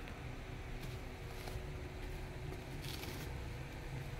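Faint rustling and handling of a package wrapped in plastic bubble wrap as it is being cut open with scissors, with a couple of brief soft crinkles.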